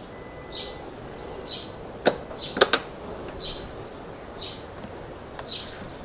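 A few sharp clicks about two seconds in, from the scooter's ignition knob and switches being worked. Under them a short high chirp repeats about once a second; no engine is running.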